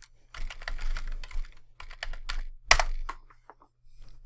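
Typing on a computer keyboard: a quick run of keystrokes entering a username and password, with one sharper, louder click a little before three seconds in, and the keystrokes thinning out near the end.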